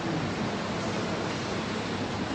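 Steady, even hiss of background noise with no other sound in it.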